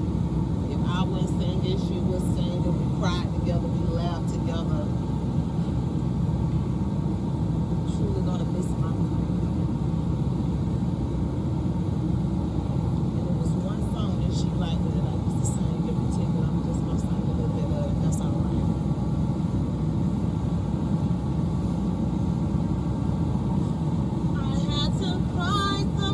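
A steady low rumbling noise, with faint voices now and then. Near the end a woman's voice begins to sing.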